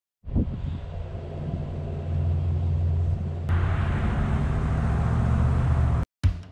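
Car running with a steady low rumble. A louder rushing noise of tyres and wind joins about halfway through.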